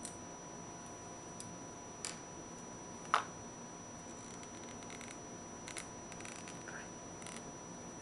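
A MacDev Droid paintball marker being handled and worked apart by hand: a few sharp clicks of its parts, the loudest about three seconds in, then light scraping and rattling.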